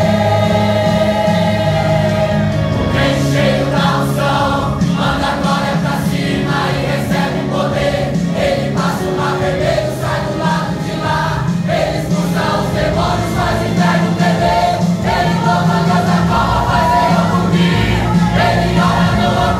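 A congregation singing a Pentecostal gospel worship song together, led by a man on a microphone, over instrumental backing with a steady low bass and a beat that comes in about three seconds in.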